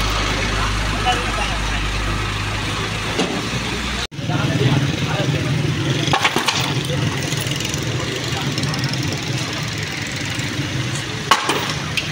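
Heavy truck engine running with a low steady rumble amid voices. The sound cuts off abruptly about four seconds in. Afterward come voices and scattered knocks as wooden stall frames are struck and knocked down, a couple near six seconds and one louder knock near the end.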